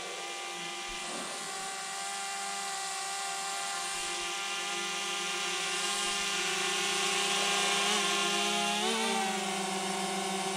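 DJI Mavic Mini quadcopter's propellers whining steadily as it flies overhead, growing gradually louder as it comes down. The pitch wavers briefly near the end as it manoeuvres.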